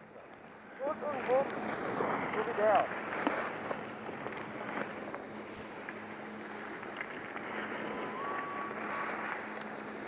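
Skis sliding over packed snow at speed, a steady rushing hiss mixed with wind on the camera microphone. Faint voices call out between about one and three seconds in.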